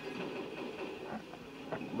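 Quiet room noise: a low, steady hiss with a few faint, indistinct sounds and no clear event.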